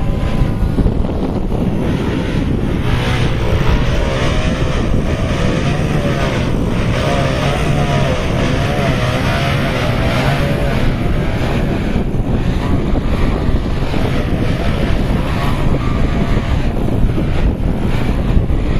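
Wind buffeting the microphone over the motor and propeller of an RC profile 3D plane hovering nose-up. The motor's pitch wavers up and down with the throttle through the middle stretch.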